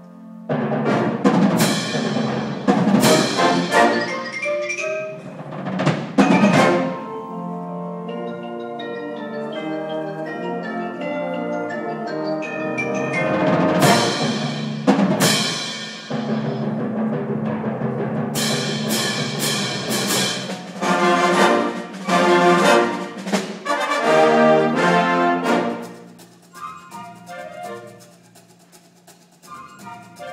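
Symphonic wind band playing: sustained brass and wind chords punctuated by loud percussion strikes, a cluster in the first few seconds and another around the middle. The music thins to a quieter passage near the end.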